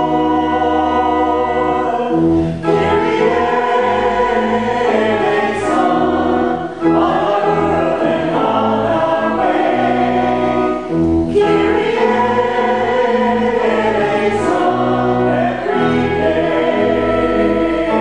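A church congregation singing together with organ accompaniment, the organ holding long bass notes under the voices.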